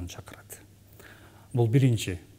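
A man speaking, broken by a pause of about a second and a half that holds only faint breathy sounds, then a few more words near the end.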